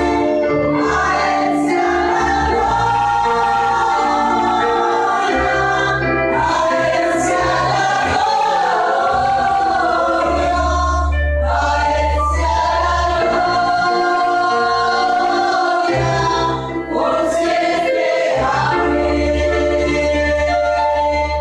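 A congregation singing a worship song together in Spanish, with sustained low instrumental chords underneath that shift every few seconds.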